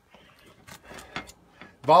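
A few light clicks and scrapes as a knife and a plastic-wrapped sausage package are handled, ahead of cutting it open. A man's voice comes in loudly near the end.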